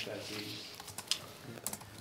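A man's voice trails off in a meeting room. A short pause follows, with room tone and a few faint, scattered clicks.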